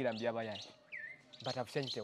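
A single short bird chirp about a second in, sliding down in pitch, between snatches of a man's voice.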